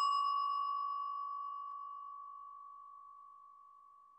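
A small bell struck once, its clear high tone ringing out and fading away slowly and evenly.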